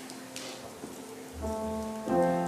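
Soft held keyboard chords: one chord fades out, then a new chord with a low bass note comes in about a second and a half in, over a faint crackly hiss.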